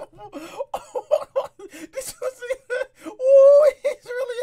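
A man giggling in short, rapid, high-pitched bursts, rising into one longer held squeal a little after three seconds in.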